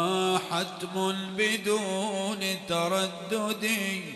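A man's solo voice chanting a line of devotional verse, with wavering, ornamented melismas in short phrases. The last note stops near the end and rings on in the hall's echo.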